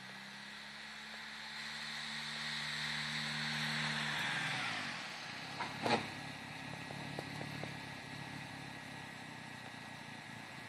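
1992 Eagle Talon TSi AWD's turbocharged four-cylinder engine running at steady revs while its tyres hiss through snow, the hiss growing as the car approaches. About four seconds in the revs drop as the car slows. A couple of sharp knocks come just before six seconds, then the engine idles.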